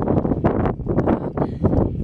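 Wind buffeting the camera microphone in loud, irregular gusts, a heavy low rumble.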